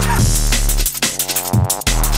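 Drum and bass music from a recorded DJ set: a deep sustained bass line under hard-hitting drums, with a brief sharp cut in the sound near the end.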